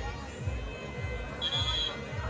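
A single short referee's whistle blast about one and a half seconds in, over crowd noise, signalling that the tackled kabaddi raider is out.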